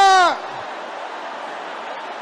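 The tail of a man's long shouted "Da!", held on one note, dropping in pitch and stopping about a third of a second in. Steady low background noise follows.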